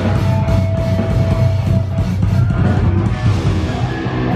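Live heavy metal band playing loud: electric guitars, bass and drums in a dense, driving wall of sound, with a held high note through the first couple of seconds.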